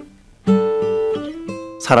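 Acoustic guitar playing a studio take: after a brief pause, held notes ring out about half a second in, moving to a higher note past the middle.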